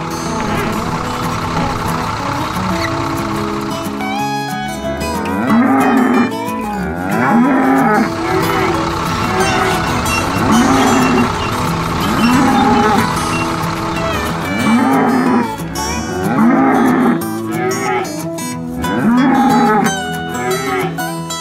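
Dairy cows mooing, one long moo after another, roughly every two seconds from about four seconds in, over steady background music.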